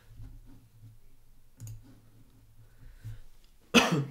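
A few faint clicks over a low hum, then a sudden short cough from a man near the end.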